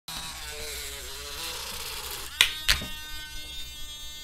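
Small handheld nail polish mixer buzzing steadily, then two sharp clicks a moment apart, after which its whine goes on faintly.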